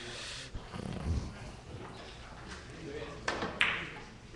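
A cue tip striking the cue ball about three seconds in, followed a moment later by a sharp, louder click of ball against ball on a carom billiards table.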